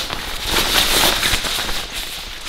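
Waterproof fabric of a Tidy Tot long coverall bib crinkling and rustling as it is unfolded and shaken out by hand, a dense crackly rustle.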